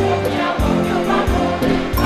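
A large mixed choir singing a gospel piece in full harmony, held chords shifting about every half second over deep bass notes from the instrumental accompaniment.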